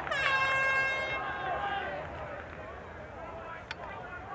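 A single steady horn blast, lasting about two seconds and fading out.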